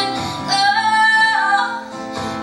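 A woman singing with acoustic guitar accompaniment in a live performance. She holds a long note that slides down near the end.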